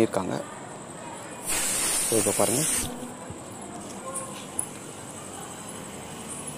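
Refrigerant gas hissing out at the charging-hose fitting of a manifold gauge for just over a second, starting and cutting off sharply.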